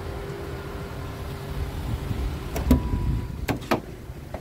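DAF CF truck cab door being opened: a sharp click from the handle and latch a little under three seconds in, then two more clicks about a second later as the door comes open, over a steady low rumble.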